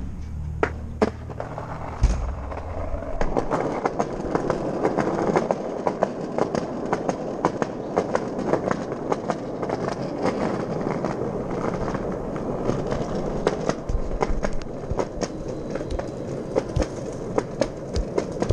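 Skateboard wheels rolling on concrete: after a sharp knock about two seconds in, a continuous rough rumble sets in, dotted with frequent sharp clicks as the wheels cross cracks and joints in the pavement.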